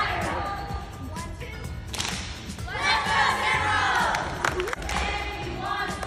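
A group of young cheerleaders shouting a cheer together, the loudest stretch coming about halfway through, with claps and thuds from moves on the mat.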